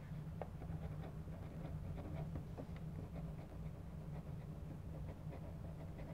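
A pen writing on paper: faint, short scratching strokes as letters are written, over a steady low hum.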